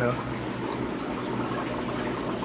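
Steady bubbling and gurgling of water from air-driven aquarium sponge filters and air lines.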